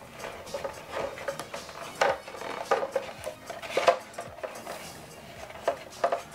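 Light clatter of hard white plastic stormtrooper armour pieces being handled, with irregular taps, scrapes and rustles as tape is pressed over an elastic strap. A few sharper knocks stand out, the loudest about two seconds and about four seconds in.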